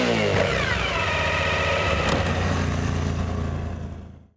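Motorcycle engine revving. The pitch peaks at the start, falls away over the first second or so, then holds a steady note before fading out near the end.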